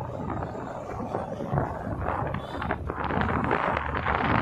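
Wind rushing over the microphone, with the engine and road noise of a moving two-wheeler, a steady noise that grows a little stronger near the end.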